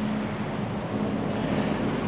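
Road traffic with a heavy lorry passing: a steady engine hum over a haze of road noise.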